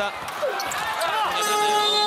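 Arena end-of-period horn sounding about a second and a half in, a steady, loud multi-tone blare marking the end of the quarter, after a moment of court noise.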